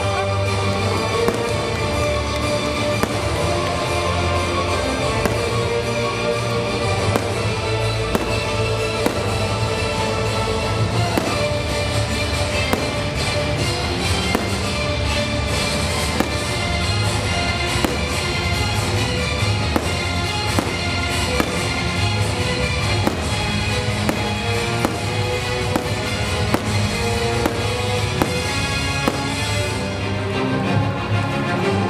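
Aerial fireworks bursting, with many bangs and pops coming irregularly throughout, over steady show music.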